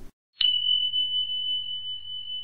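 A single high, steady ringing tone from an end-card sound effect. It starts sharply about half a second in and holds with a slight wavering in loudness.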